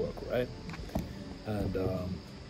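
A man's voice in short, broken bursts, with a sharp click about a second in.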